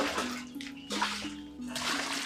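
Water scooped and splashed from a plastic water drum with a plastic bowl, in three splashes about a second apart, over background music with steady low notes.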